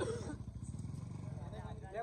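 An engine running steadily with a rapid, low pulsing, under faint voices.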